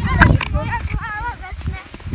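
A young child's high voice, drawn out and wavering up and down in pitch, with no clear words, over dull thumps of footsteps crunching in snow as the sled is pulled. The thumps are strongest in the first half second.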